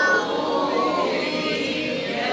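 Melodic Quran recitation (tajweed chant) by a male reciter: a long drawn-out vowel that drops in loudness just after the start and sinks slowly in pitch.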